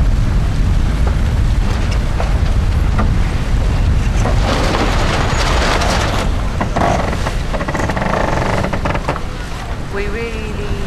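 Wind buffeting the microphone and water rushing along the hull of a racing yacht under sail. The rush swells about halfway through.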